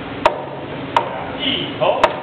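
Meat cleaver chopping through pork spare ribs on a plastic cutting board: two sharp chops about three-quarters of a second apart.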